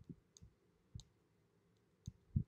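Near silence with a few faint clicks of a dry-erase marker on a whiteboard, most of them in the first second.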